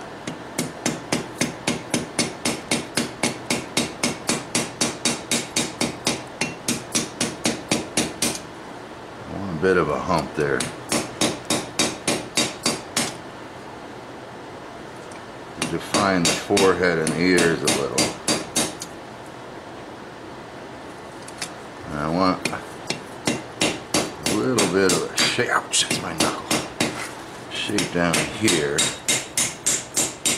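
Hand hammer striking a red-hot railroad spike on a steel anvil, shaping the forged lion head. It comes in quick runs of blows, about four a second, each run lasting a few seconds, with short pauses between runs.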